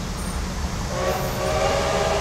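Diesel-electric locomotive's horn sounding a steady held blast that starts about a second in, over the low rumble of the approaching train.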